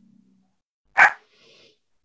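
A single short, sharp bark-like call about a second in, the loudest sound here, followed by a fainter, shorter sound.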